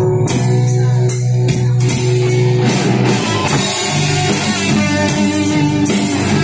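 Live rock band playing an instrumental passage with electric guitar and acoustic guitar, the sound growing denser and fuller about three seconds in.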